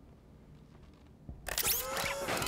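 Near silence, then about a second and a half in, a sudden burst of warbling, chirping electronic tones that glide up and down: a robot's sound-effect voice.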